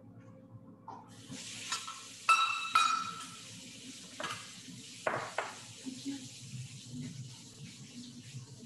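Kitchen tap turned on about a second in and running steadily, drawing warm water for proofing yeast. Over the running water come a few sharp ringing clinks and later knocks of a kitchen vessel being handled.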